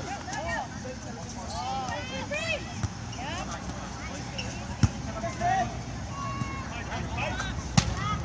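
Volleyball players calling out during a rally, with two sharp smacks of the ball being hit, one about five seconds in and a louder one near the end.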